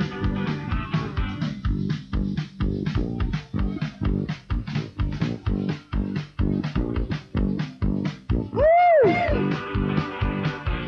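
Instrumental passage of a rock song: electric guitar and bass guitar over a steady, driving beat. Near the end a short swooping note rises and falls and is the loudest moment.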